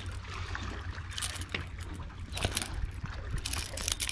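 Sea water lapping and trickling against jetty rocks under a steady low wind rumble on the microphone, with a few light clicks about a second in, near the middle and near the end.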